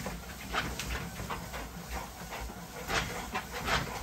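Presa Canario panting hard with its tongue out while trotting on a dog treadmill: quick, airy breaths, about two or three a second, over the low steady rumble of the treadmill.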